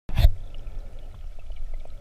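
Underwater sound picked up by a submerged camera: a steady low rush of moving water with faint scattered ticks, after a brief loud burst at the very start.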